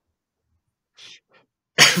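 A short pause with a brief breathy snort of stifled laughter about a second in, then a man starts speaking, laughing, near the end.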